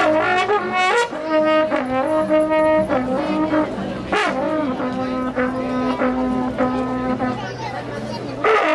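A horn playing a tune of long held notes, one after another at different pitches, with voices underneath.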